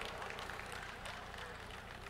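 Faint audience noise in a large hall during a pause in a sermon, low and fading slightly.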